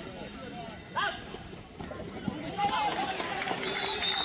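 Several voices of kabaddi players and spectators shouting and chattering over one another: a sharp call at the start, a rising shout about a second in, and busier overlapping voices from about two and a half seconds on.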